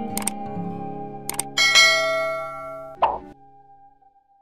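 Background music with animation sound effects: two quick pairs of clicks, then a bright chime about one and a half seconds in that rings and fades, and a short pop near the end before it goes almost quiet.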